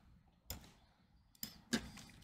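Two faint computer keyboard clicks about a second apart, typed into a parameter field, with little else between them.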